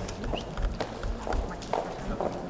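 A scatter of sharp clicks and taps, several a second at irregular spacing, in a large hard-floored hall.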